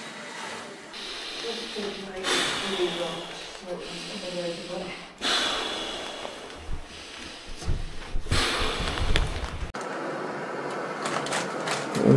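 Light Tour inflatable sleeping mat being blown up by mouth: three long hissing exhalations into the valve, each two to three seconds, with short breaths taken in between.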